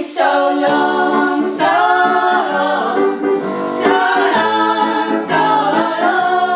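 A woman and a girl singing a song together, accompanied on piano.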